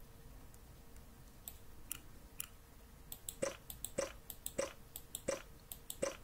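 Faint, scattered computer clicks while answers are entered on screen. The clicks are sparse at first, then come more firmly about every half second in the second half, over a faint steady hum.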